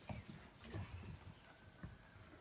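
A few faint, irregular soft thumps over quiet room tone.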